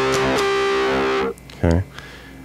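Electric guitar tuned down to C standard, played through a parked wah for a nasal, midrange tone. It plays the last of a quick run of five strums on the riff's chord, lets the chord ring, and mutes it suddenly about a second and a half in.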